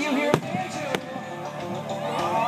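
Aerial firework shells bursting: two sharp bangs about half a second apart, the first louder, over background music.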